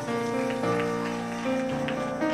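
Keyboard music playing held chords that change every half second or so, with a few light clicks over it.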